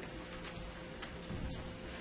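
Room noise: a faint, steady hiss with a thin, steady hum underneath and a few soft ticks.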